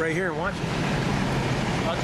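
A voice ends about half a second in, over steady outdoor rumbling noise that sounds like wind or a running engine.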